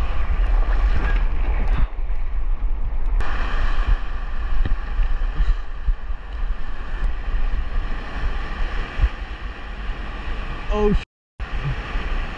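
Heavy surf washing and churning over shoreline rocks, with wind rumbling on the microphone. The sound cuts out abruptly for a moment near the end.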